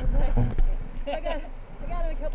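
Indistinct voices of people talking, over a steady low rush of noise from the river and the wind.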